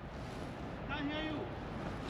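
A faint, distant voice speaks briefly about a second in, over a steady low background hiss and rumble.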